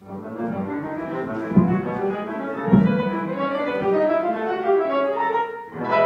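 Instrumental opera accompaniment with bowed strings and piano, playing a moving passage with no singing. Two short low thuds come about one and a half and two and a half seconds in.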